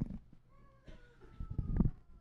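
A handheld microphone being taken up and handled over the church PA: dull low thumps right at the start and louder ones near the end. Over them runs a thin, high tone that falls slightly for about a second and a half.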